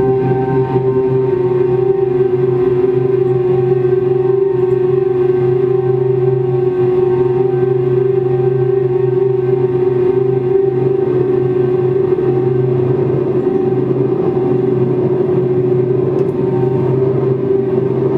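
Laptop-generated ambient drone: dense held tones, one low and one in the middle register with fainter upper overtones, under a grainy noise texture, steady in level throughout.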